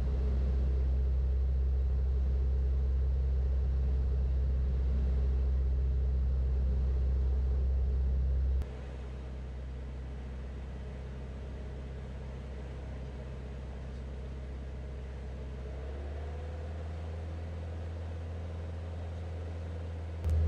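Light aircraft's piston engine droning steadily in the cockpit on final approach. A little under halfway through, the drone drops suddenly to a quieter level, and its low tone shifts a few seconds before the end.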